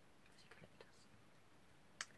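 Near silence: room tone with a few faint short ticks around half a second to a second in.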